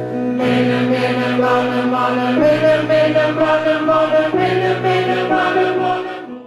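Large mixed amateur gospel choir singing long held chords in harmony. The chord changes about three times, roughly every two seconds.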